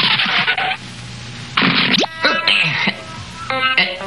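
Cartoon soundtrack music and sound effects: a few short noisy swishes and a quick rising glide about two seconds in, with brief pitched stings near the end.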